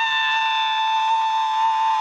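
A person's shrill, high-pitched wail, held as one long steady note on the exhale.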